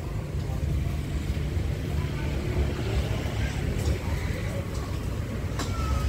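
Outdoor background noise: a steady low rumble with faint voices in the distance.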